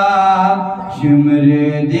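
A male voice chanting a Muharram noha (lament) into a microphone. A long held note trails off just before a second in, and a lower held note follows.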